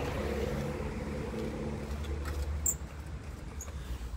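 Outdoor street ambience: a steady low wind rumble on the microphone with road traffic. The out-of-order gate intercom buzzer is tried and gives no buzz or reply.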